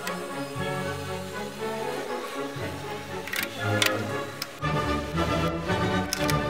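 Background music: a melody over a bass line that changes note every second or two, with a few light percussive ticks.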